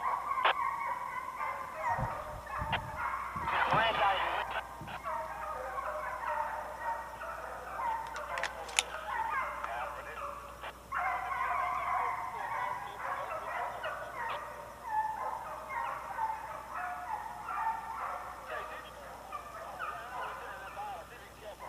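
A pack of hunting hounds baying and bawling in the woods, many voices overlapping almost without a break, with a few dull thumps about two to three seconds in.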